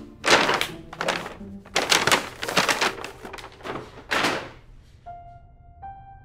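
A gift package being handled and unwrapped: a run of rustles and dull thunks over about four seconds. Soft piano music comes in near the end.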